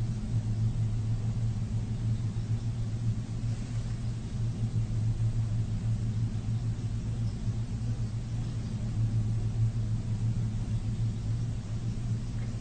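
A steady low-pitched hum that does not change.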